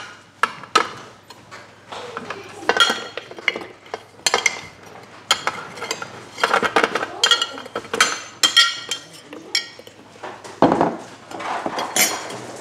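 Frozen banana chunks dropping into a Thermomix TM6's stainless steel mixing bowl, with a metal spoon clinking against the bowl and the plastic container as the pieces are pushed out. It is a string of irregular clinks and knocks, each ringing briefly.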